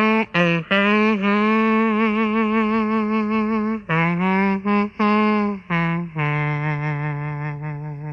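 A man imitating a saxophone with his mouth: a short melody of held, wavering notes, ending on a lower note that slowly fades.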